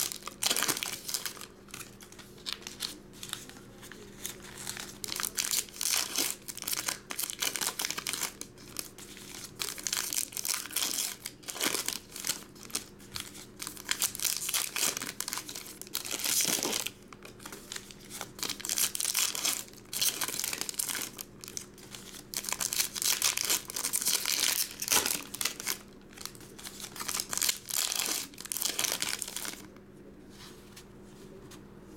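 Foil trading-card packs crinkling and tearing as they are opened, in irregular bursts throughout, over a faint steady low hum.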